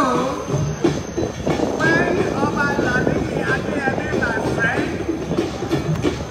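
A man's voice speaking into a microphone over a public-address system, heard over a dense, steady background din.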